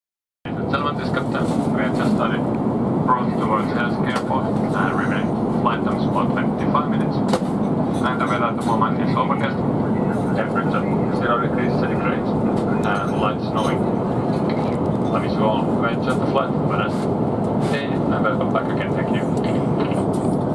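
Steady cabin noise of an Airbus A350-900 airliner in flight, heard from inside the cabin, with faint indistinct voices behind it.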